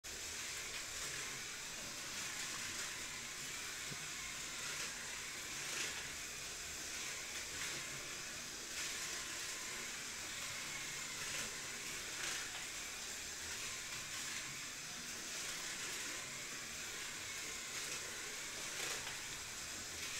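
Steady faint background hiss with no distinct events.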